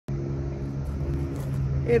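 Steady low machine hum with several constant tones and a rumble beneath, starting as the recording begins.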